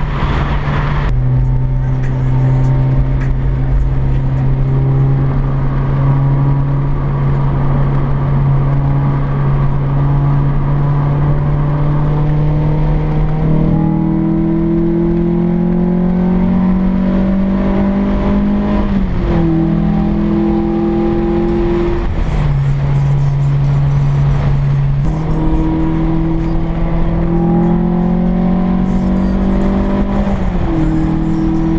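Honda H22A four-cylinder engine heard from inside the car's cabin, running steadily at cruise and then pulling up through the revs with a rising pitch about halfway through. The pitch drops suddenly at each gear change, and the engine climbs again near the end, at part throttle.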